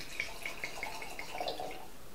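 Ruby port being poured from its bottle into a wine glass: a quiet, steady trickle of liquid with many small gurgling ticks.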